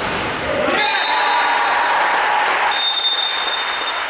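Voices shouting and cheering in a gym hall during a youth basketball free throw. The cheer swells about a second in and holds for a couple of seconds before easing.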